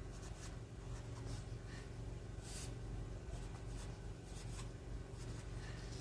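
Black felt-tip marker writing on paper: faint, irregular scratchy strokes as "log 3" is written out, over a low steady hum.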